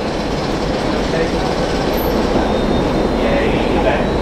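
Steady rumble of a diesel locomotive at work while a locomotive rolls slowly on the rails.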